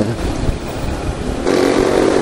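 Small motorcycle engine running while riding, with wind rushing over the microphone; a steady engine note comes up about one and a half seconds in.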